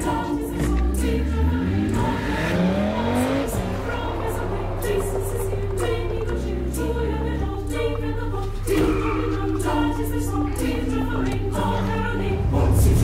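A choir singing over music, with a car engine revving up in a few rising sweeps during the first three or four seconds.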